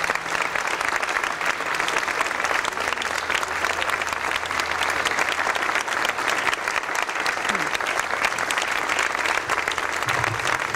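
An audience applauding steadily, many people clapping at once with no break.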